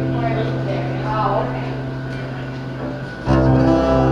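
Acoustic guitar played live: a strummed chord rings on and slowly fades, then a fresh chord is strummed a little past three seconds in.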